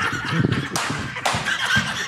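A man laughing loudly and heartily, in uneven bursts.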